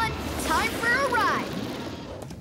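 Several short, wordless vocal calls from an animated character, gliding up and down in pitch, over a low background rumble.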